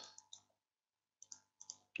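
Faint computer mouse clicks, a few short taps in the first half second and a quicker cluster in the second half, over near silence.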